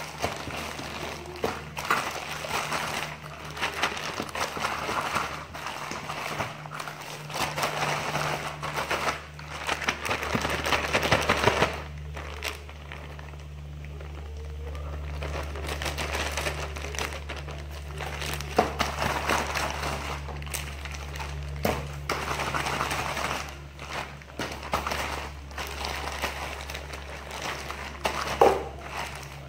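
A plastic zip-top bag of chicken in a yogurt marinade crinkling and rustling as it is handled, squeezed and pressed on a countertop, with a quieter stretch about halfway through. A steady low hum runs underneath.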